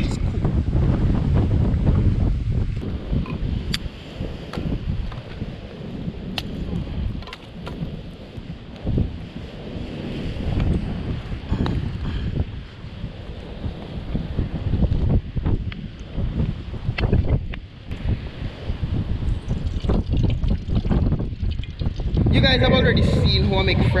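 Wind buffeting the microphone outdoors as a low, uneven rumble, with a few scattered faint clicks and knocks.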